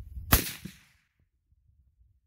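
A single rifle shot from an AR-style rifle chambered in 300 Blackout: one sharp crack about a third of a second in, trailing off over about half a second.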